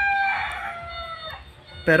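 A rooster crowing: one long call that tails off slightly lower in pitch and fades out about a second and a half in.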